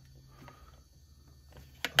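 Two sharp clicks near the end over a faint steady hum: a switch being pressed on a JVC GR-DVL310U Mini-DV camcorder as its video light is switched on.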